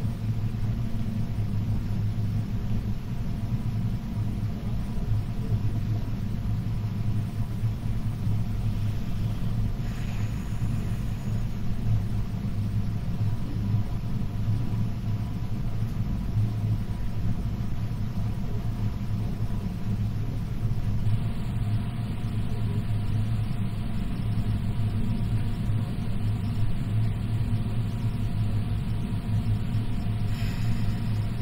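A steady low rumble with a faint hum, unchanging throughout.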